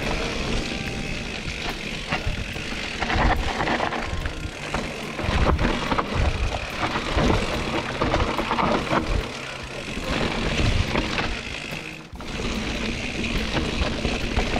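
A mountain bike descending a rocky dirt singletrack: wind rushes steadily over the action-camera microphone above the rattle and clatter of tyres, chain and suspension on stones and roots, with frequent sharp knocks. There is a brief lull about twelve seconds in.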